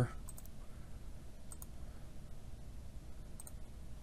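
A few faint computer mouse clicks, mostly in quick pairs: one group near the start, one about a second and a half in, and one near the end, over a low steady room hum.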